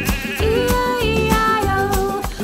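Upbeat children's song music, with long held melody notes over a steady backing.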